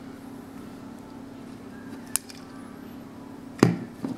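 A camera-flash circuit hidden inside a Magic 8 Ball fires with a single sharp click about halfway through, followed by the faint high whine of its capacitor recharging, rising in pitch. Near the end comes one louder knock as a hand takes hold of the hard plastic ball on the wooden table.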